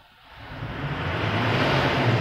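A low engine-like hum with a rushing noise over it rises from near silence about half a second in, then holds steady.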